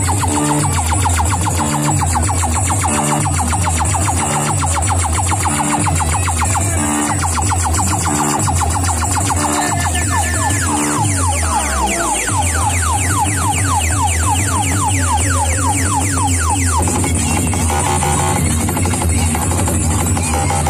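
Loud electronic dance music with a heavy, pulsing bass beat blasting from big DJ speaker stacks. About twelve seconds in the bass briefly drops away with a falling sweep, then comes back under a run of quick rising synth sweeps.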